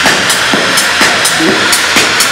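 Techno played live from laptop and controllers through a loud club sound system: a steady kick about twice a second with high hi-hat ticks between the beats and short synth notes over them.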